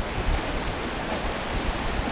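Whitewater rapids rushing in a steady wash of noise around a raft, with wind buffeting the microphone in gusty low rumbles.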